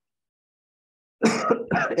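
Silence, then about a second in a person gives a short cough and begins to speak.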